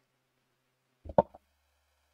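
A brief sharp pop about a second in, with a couple of smaller clicks just around it. The rest is near silence.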